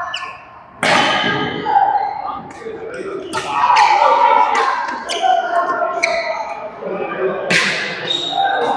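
Badminton rackets striking a shuttlecock in a doubles rally: several sharp cracks, the loudest about a second in and near the end, ringing in a large hall. Voices chatter throughout.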